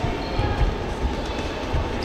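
Sports-hall din during a boxing bout: a steady mix of hall noise with repeated low thumps, one sharper than the rest about a third of the way in.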